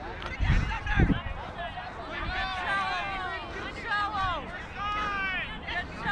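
Several distant voices calling and shouting across an open field, overlapping, with no one voice close. Two short low thumps come about half a second and a second in.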